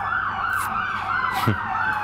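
Emergency vehicle siren in its fast yelp, warbling up and down about four times a second, with a fainter tone slowly falling in pitch above it.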